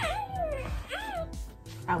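RealCare Baby infant simulator playing its recorded happy baby coos through its speaker: two short coos that rise and fall in pitch, the sound it makes once its care need has been met. Background music plays under it.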